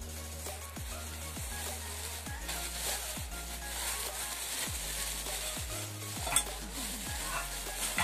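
Clear plastic bag and wrapping crinkling and rustling as it is handled around a stainless steel kettle, with one sharp click about six seconds in. Background music with a deep bass beat runs underneath.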